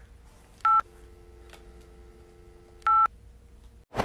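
Telephone line tones: a short, loud touch-tone beep, then a quieter, steady two-note dial tone for about two seconds, then another touch-tone beep. The tones signal that the call has been hung up.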